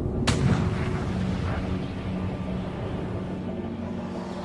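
A single heavy gun blast about a quarter of a second in, followed by a long low rumble that slowly fades.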